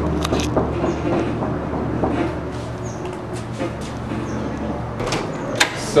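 A few knocks of a fist on a heavy carved wooden front door, then near the end sharp clicks of the door's latch as it is opened from inside.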